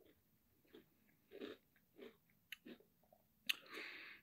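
Faint close-up eating sounds: a few soft, separate chews of a spoonful of vanilla ice cream with Cinnamon Toast Crunch cereal, with small mouth clicks and a breath near the end.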